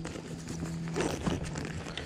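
A hand rummaging through a soft gear bag and pulling out a plastic spice shaker, with scattered small clicks and rustles.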